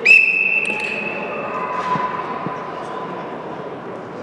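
Whistle blast: a sharp, steady, high whistle starting at once and lasting under two seconds, overlapped by a second, lower whistle tone held to about three seconds in, over the murmur of a sports hall.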